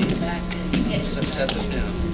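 A few light clacks from quad roller skates stepping on a wooden rink floor, under low voices and a steady electrical hum.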